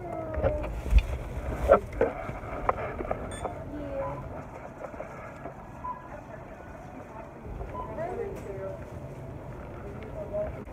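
Store ambience: scattered voices talking in the background over a low rumble, with a few sharp knocks and clicks, the loudest about one second and just under two seconds in.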